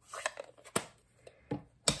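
A handful of light plastic clicks and knocks as a stamp ink pad is picked up and set down on the crafting desk, with quiet gaps between them.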